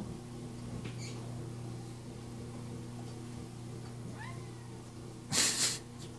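Orange domestic cat giving a faint, short meow about four seconds in, followed near the end by a louder, breathy hissing burst of about half a second.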